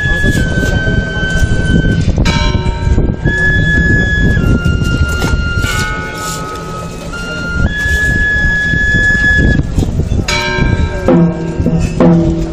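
Procession band playing a slow funeral march, the melody in long held notes that step from pitch to pitch, with fuller chords near the end, over a noisy crowd.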